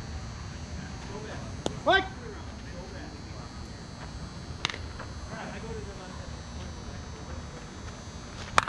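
Open-air ambience on a softball field, with faint, scattered voices of players across the diamond over a steady low rumble. A single sharp knock sounds a little past halfway.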